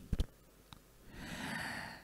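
A man's soft, audible in-breath lasting about a second in the second half, after a brief mouth click near the start.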